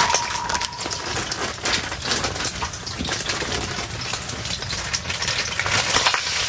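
Hot avocado oil crackling and spitting in a frying pan on a wood-burning tent stove, a steady fizz with many small ticks and pops, alongside the wood fire in the stove; a brief high ring sounds at the start.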